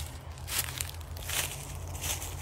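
Footsteps crunching through dry leaf litter on a woodland trail, two steps about a second apart.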